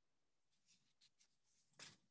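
Near silence: room tone with a few faint, soft ticks and a brief rustle near the end.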